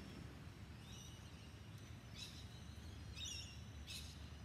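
Faint outdoor background: a steady low rumble with four short, high-pitched chirps spread through it.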